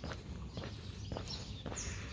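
Footsteps of a person walking on brick paving, about two steps a second.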